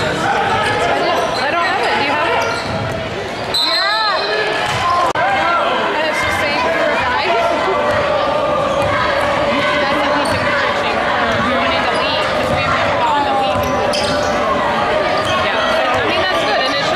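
Basketball being dribbled on a hardwood gym floor amid the crowd's constant chatter and shouts, echoing in a large gymnasium, with a few short squeals about four seconds in.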